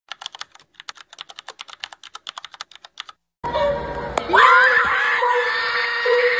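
A rapid run of computer-keyboard typing clicks for about three seconds. After a brief silence, a loud arena crowd cheers and screams.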